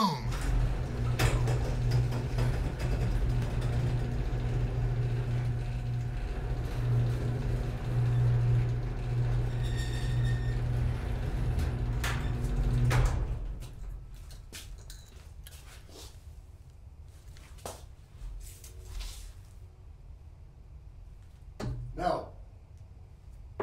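A loud, steady low mechanical rumble that stops abruptly about thirteen seconds in. A much quieter room follows with a few light knocks, and near the end a sharper knock from a thrown dart striking a dartboard.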